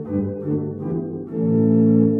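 Sampled pipes of the 1877 Salisbury Cathedral organ, played from a home console: a short phrase of held organ chords that change a few times and grow louder from about a second and a half in.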